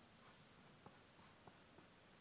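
Faint scratching of a pencil lead on drawing paper, in several short strokes with a few light ticks.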